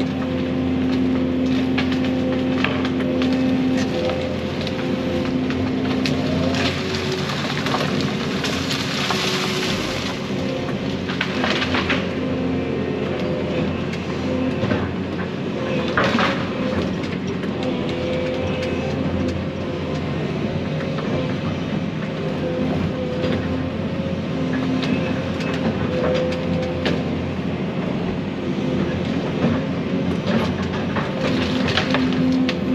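Excavator engine and hydraulics running steadily under load, heard from inside the cab, the hydraulic pitch shifting as the grapple works. Scattered sharp cracks and crunches of brush and branches breaking as it is grabbed and loaded.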